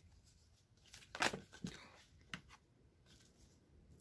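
Tarot and oracle cards being shuffled by hand: a few short, soft flicks and rustles of the card stock, the loudest about a second in.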